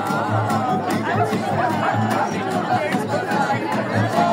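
Live acoustic band playing: double bass and acoustic guitar with regular percussive hits and a voice over the top, mixed with audience chatter.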